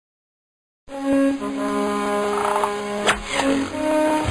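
Silence for almost a second, then an animated series' opening theme music begins with held brass chords and a sharp hit about three seconds in.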